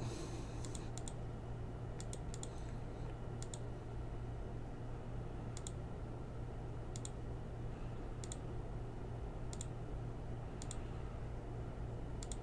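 Computer mouse button clicking repeatedly, a dozen or so sharp clicks at uneven intervals about a second apart, over a steady low hum.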